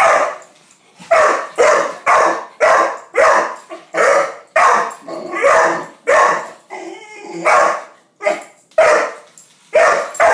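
A dog barking over and over at a toy spider on the floor, about two barks a second, with a short break a little after halfway.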